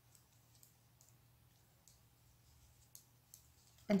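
Metal circular knitting needles clicking lightly a few times, at irregular intervals, as stitches are worked and bound off.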